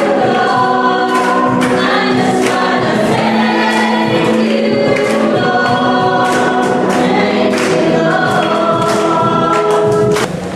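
Congregation singing a worship song together in sustained notes over music with a regular beat.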